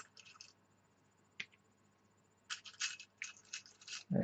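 Faint scratching and light clicks of small wooden game pieces being handled on a board-game map: a few at the start, a single click about a second and a half in, then a quick cluster of scratches in the last second and a half.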